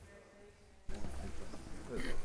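Footsteps on a hard floor and background voices as a group of people walks up to the front of a large room. The room sound steps up suddenly about a second in.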